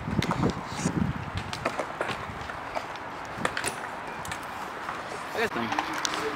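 BMX bike rolling across a concrete skatepark: tyre noise on the concrete with scattered small clicks and knocks from the bike.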